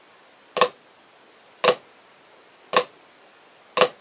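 Drumsticks striking a practice pad in four evenly spaced flams, about one a second: in each, the low stick's quiet grace note lands just ahead of the high stick's accented down stroke.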